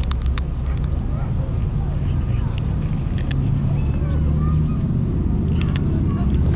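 Cats chewing dry kibble close by: scattered short, crisp crunches, in small clusters near the start, around the middle and near the end, over a steady low rumble.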